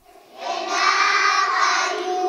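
Young children singing together, starting about half a second in and holding steady notes.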